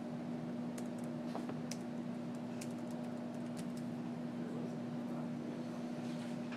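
Room tone of a quiet classroom: a steady low hum under an even hiss, with a few faint, scattered small clicks and taps.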